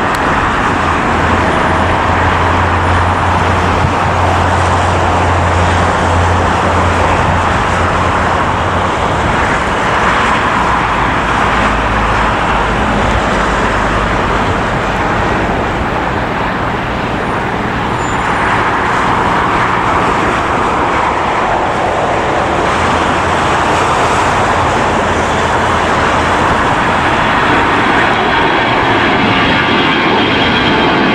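Steady, loud outdoor airport noise: the roar of jet engines on the airfield mixed with traffic, with a low steady hum through the first several seconds.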